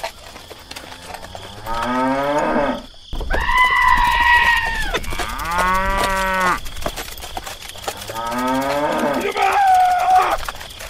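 Cattle mooing: a series of about five long calls in a row, some rising in pitch as they go, laid in as a sound effect over the toy animals.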